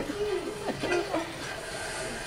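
Faint, brief voices in the first second, then a steady low hiss of room noise.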